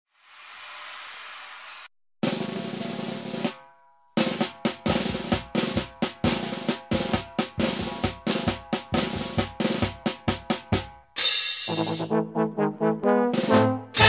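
Marinera norteña band music opening with percussion: a drum roll, then quick, regular snare and bass drum strokes. A loud crash comes about eleven seconds in, and brass comes in near the end.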